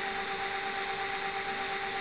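Cromotor direct-drive hub motor spinning free at full throttle in the controller's 120% throttle mode, giving a steady electric whine in two notes over a rushing hiss.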